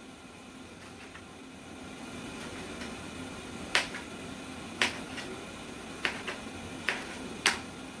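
Kitchen knife slicing through tomatoes and knocking on a cutting board: six sharp, irregular taps in the second half, about one a second.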